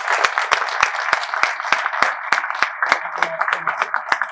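Audience applauding: dense, many-handed clapping that thins out and fades near the end.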